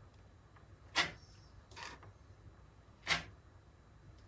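Tile adhesive being worked with a spatula: two short, sharp scraping sounds about two seconds apart, with a fainter one between.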